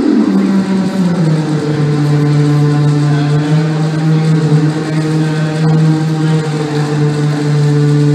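A steady, low electronic drone with a few overtones, the end of a fast downward pitch sweep; it settles a step lower in pitch about a second in and then holds.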